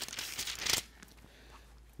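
Thin Bible pages being leafed through by hand: a soft papery rustle that dies away about a second in.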